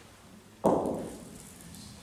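A single loud thud of a heavy bocce ball knocking against the court or its boards, about half a second in, dying away over about a second.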